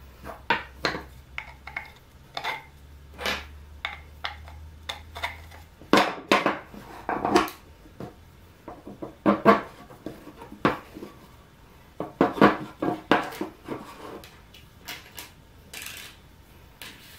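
Wooden parts knocking and clattering against each other and the workbench top as they are handled, with light clinks of screws and washers. The knocks come irregularly, in short bunches.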